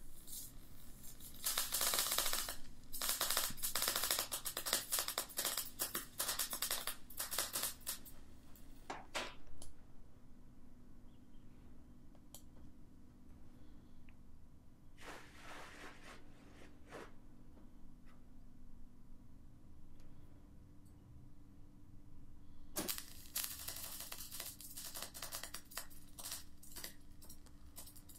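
MIG welder laying short root runs, a dense, fast crackle of the arc. The first run lasts about ten seconds, a short burst comes about halfway through, and another run starts about five seconds before the end.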